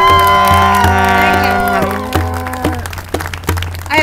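Public-address feedback howl as the corded microphone is handed over: several steady tones ring together and die away a little under three seconds in, over a pulsing low buzz and clicks from the microphone being handled. Scattered clapping runs underneath.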